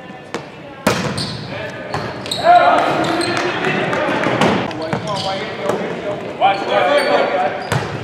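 Volleyball being struck during play in a gymnasium: sharp ball hits about a second in, about halfway through and near the end. Players and spectators call out between the hits, echoing in the large hall.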